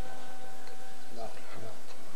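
Faint men's voices talking in the background over a steady hiss, with no recitation.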